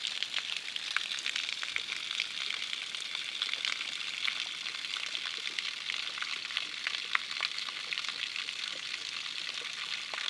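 Spring water pouring from a half-cut PVC pipe and splashing onto rocks: a steady hiss full of small crackling splashes.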